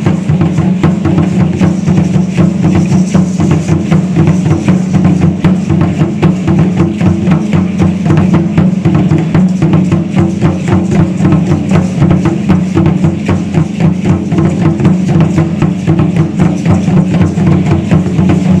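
Fast, steady drumming for Aztec (danza azteca) dance, with a dense, even beat that does not let up.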